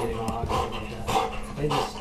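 A Belgian Malinois barking several short times in a row.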